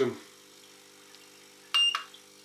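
A single short, high electronic beep from the Doktor Konstantin-2 electroacupuncture stimulator as one of its buttons is pressed, near the end.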